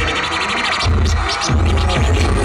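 Hip-hop beat over a concert PA with a DJ scratching a record on turntables; the bass drops out for most of the first second and then comes back in.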